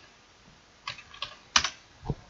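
A few quick keystrokes on a computer keyboard, starting about a second in, the loudest near the end.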